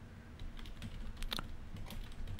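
Typing on a computer keyboard: a few scattered, faint key clicks.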